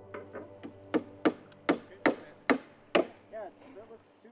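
Hammer blows on timber deck boards: about eight sharp, separate strikes in under three seconds, at an uneven pace.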